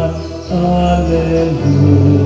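Slow church music for the Gospel acclamation: long held notes that step from one pitch to the next, with a brief dip in loudness about half a second in.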